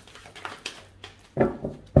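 Tarot cards being shuffled by hand with light clicking, then two sudden thumps, about a second and a half and two seconds in, as cards spill out of the deck.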